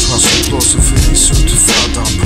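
Hip hop track with a heavy bass beat and a man rapping over it.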